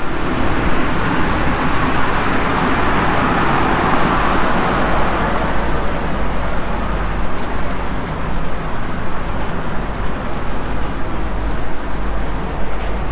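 Steady rushing hum inside a KTM ETS electric train carriage standing at the platform, from its ventilation and onboard equipment running, with a few faint ticks.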